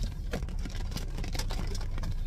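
Inside a car cabin while driving slowly: a steady low engine and road rumble, with rain striking the roof and windshield as scattered irregular ticks.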